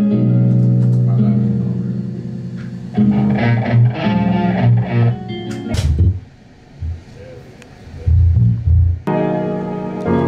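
Guitar chords ringing over held bass notes, changing chord about three seconds in. The playing thins out to a few low notes partway through, then full chords come back near the end.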